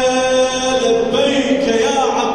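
A single voice chanting a religious recitation, holding long steady notes and moving to a new pitch near the end.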